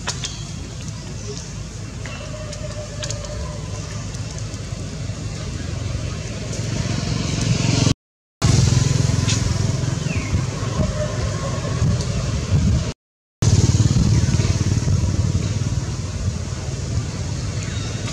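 Outdoor background noise: a steady low rumble that grows louder toward the middle and eases off near the end, broken twice by brief dropouts to silence.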